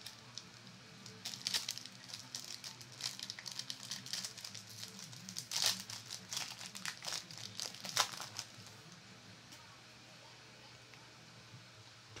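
A Yu-Gi-Oh! booster pack's foil wrapper crinkling and tearing as it is ripped open by hand. It is a dense run of crackly crinkles from about a second in until about eight seconds, loudest in the middle, then it goes quiet as the cards are drawn out.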